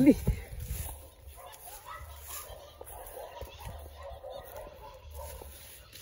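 Faint, distant murmured voices over a low rumble of wind or handling noise on a phone microphone, after a spoken word cuts off at the very start.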